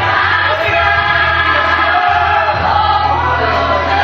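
Live gospel song through a church PA: voices singing together over amplified accompaniment with a steady, sustained bass.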